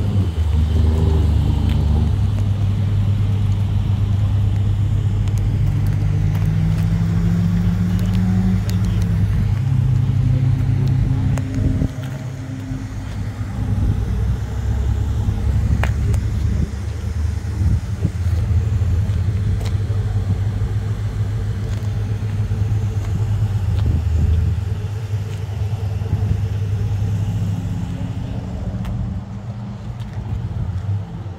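Carburetted V8 of a Plymouth 'Cuda idling with a steady deep rumble. Its pitch rises briefly about six to nine seconds in.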